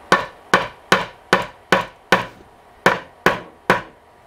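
A hammer striking brads into wooden tabletop boards: about nine quick strikes, a little over two a second, with a short pause past the halfway point. The brads were left sticking up by an air brad nailer and would not go in.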